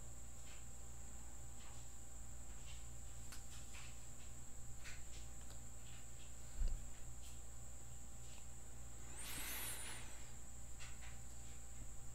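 Low-level room tone: a steady low hum under a steady high-pitched whine, with a few faint clicks and a soft thump a little past halfway.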